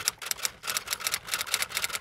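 Typewriter keystroke sound effect: a quick run of sharp clicks, about eight a second.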